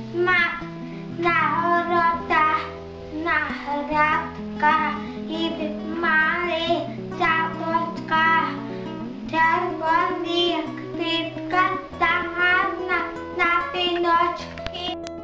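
A child singing a song over instrumental backing, the voice going in phrases over sustained low accompaniment notes.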